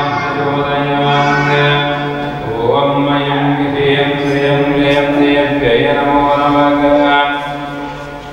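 Hindu devotional chant sung in long held notes over a steady low drone, with a few gentle shifts in pitch.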